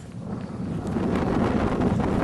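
Wind buffeting the camera's microphone, a low rumbling noise that builds over the first second and then holds steady.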